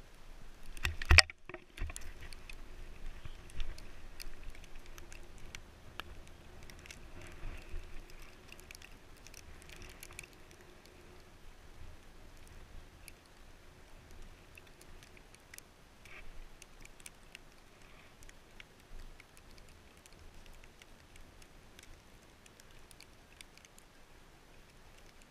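Faint ambience of a chairlift ride: a low rumble with scattered small ticks and taps, slowly fading. One loud knock about a second in, followed by a brief cut-out.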